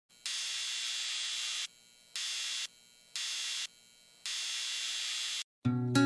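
Logo sting made of four bursts of static-like hiss in a long, short, short, long pattern. Acoustic guitar strumming comes in about half a second before the end.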